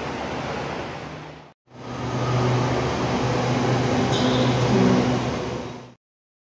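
Steady rumble of traffic and machinery at an elevated rail platform. After a sudden break about a second and a half in, louder steady noise with a low hum returns and cuts off abruptly at the end.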